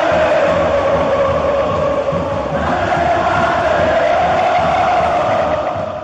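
A large crowd of football supporters chanting in unison, the voices held on long, steady notes.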